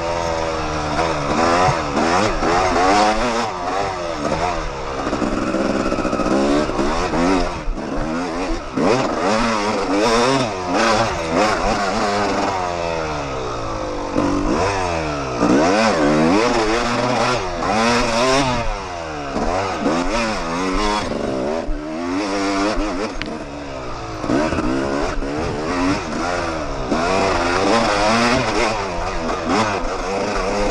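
Yamaha YZ250 two-stroke dirt bike engine, heard from on the bike, revving up and down without pause as the throttle is worked and gears change through the trail's turns.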